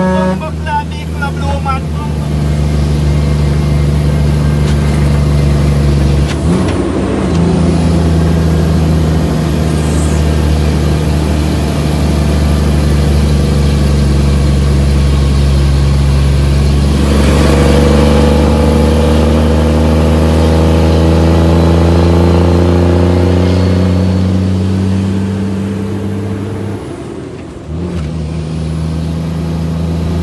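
Shacman F3000 truck's diesel engine pulling on the road, heard from inside the cab. The engine note breaks off briefly twice, about six seconds in and near the end, like gear changes. In between, its pitch climbs steadily for about ten seconds as the truck accelerates.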